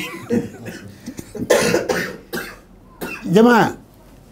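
A man coughs between words: a short rough burst about a second and a half in, with a brief spoken sound near the end.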